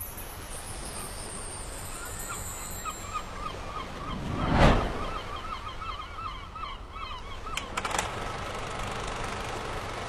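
Outdoor ambience with a run of rapid, repeated bird calls, about four or five a second. A swelling whoosh rises and falls about halfway through, and two sharp clicks come near the end.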